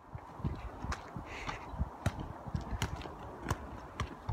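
Faint irregular soft thumps and a few thin clicks with light wind buffeting: handling and walking noise on a handheld phone's microphone.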